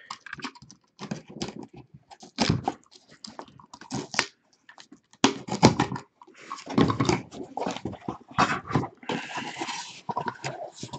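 Box cutter slicing packing tape on a sealed cardboard shipping case, followed by irregular scraping, tearing and rustling of cardboard as the flaps are pulled open.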